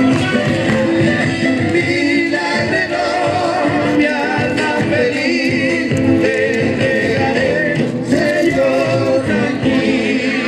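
Argentine folk song for dancing: a sung melody with wavering vibrato over strummed guitar and a steady beat.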